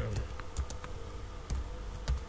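Computer keyboard typing: a few irregular keystroke clicks, with a louder one about a second and a half in.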